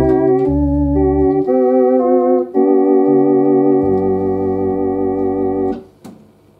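1950s Compton Electrone electronic organ playing a slow tune: sustained chords with vibrato over pedal bass notes, freshly repaired and sounding in tune. A long held chord cuts off near the end.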